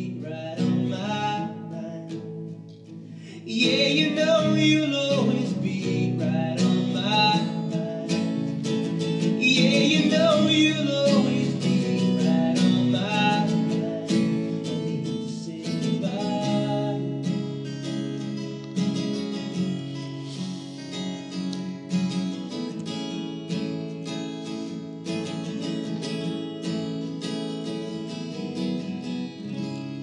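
Two acoustic guitars strummed in a live indie song, with a man singing over them through the first half. The playing then grows gradually quieter toward the end as the song closes.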